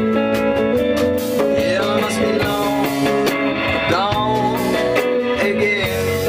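Live band music in an instrumental break: a Fender Telecaster electric guitar played over electric bass, with notes that bend up and down in pitch twice through the passage.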